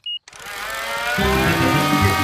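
A small toy aeroplane's propeller motor starting up in a cartoon. Its buzzing whine rises in pitch and loudness over the first second, then runs steadily.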